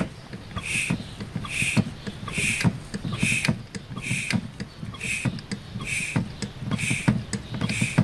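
Four-cylinder common-rail diesel engine of a Mercedes Vito 115 CDI running, heard close up under the vehicle, with a regular short hissing pulse repeating a little more than once a second and light clicks between.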